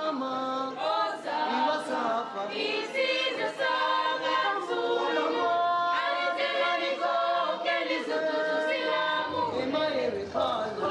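A choir singing, several voices together in harmony.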